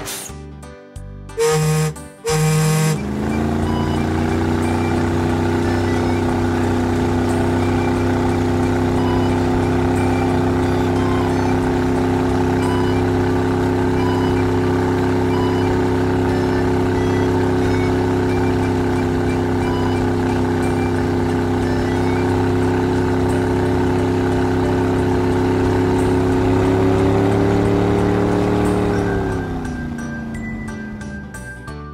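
Two short cartoon horn honks, then a steady drone of several held low tones that glides up in pitch as it starts about three seconds in and glides down as it stops near the end.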